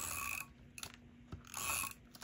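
Handheld adhesive tape runner drawn twice across paper: two short ratcheting whirs about a second and a half apart, with a light tick between them.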